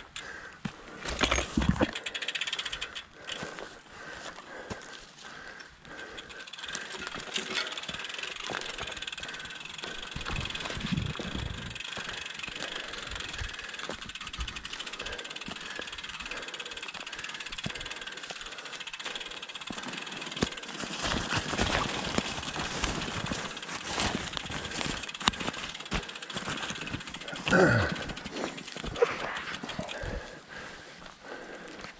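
Bicycle riding along a dirt forest trail: a steady noise of tyres rolling on dirt, with frequent small clicks and rattles from bumps. There are louder jolts about a second in and a couple of seconds before the end.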